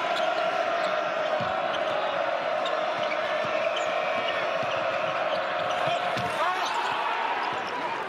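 Basketball arena game sound: a crowd's steady din holding one pitch, which slides upward about six seconds in, over a ball being dribbled and sneakers squeaking on the hardwood court.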